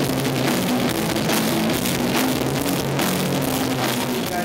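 Live rock band playing: electric guitars and bass holding chords over a drum kit, with cymbals and drum hits throughout.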